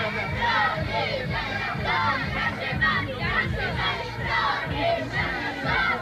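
A group of young boys shouting and chanting together in a huddle, celebrating a tournament win.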